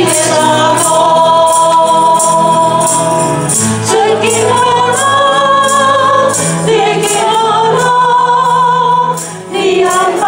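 Church congregation singing a hymn in Taiwanese together with a lead singer on a microphone, over instrumental accompaniment with a steady beat. The singing breaks off briefly between phrases near the end.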